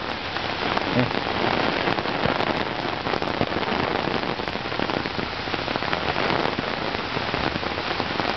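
Heavy rain pouring steadily onto a paved street and pavement: a dense, even hiss thick with small drop ticks.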